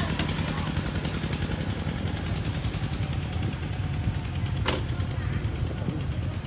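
Single-cylinder diesel engine of a walking tractor (Cambodian kor yon) chugging steadily under way, with one sharp click about four and a half seconds in.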